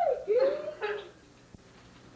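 A young child's voice making short whiny cries in the first second, then quiet with a faint click.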